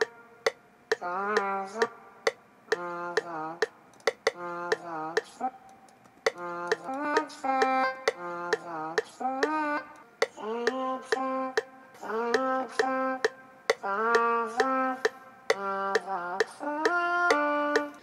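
A heavily auto-tuned vocal recording played back in short chopped phrases, its pitch jumping between flat, robotic steps, with a sharp click at the start of many notes.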